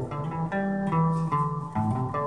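Electric guitar being played: a quick run of picked notes and chord tones, the pitch stepping every few tenths of a second with low notes sounding under higher ones.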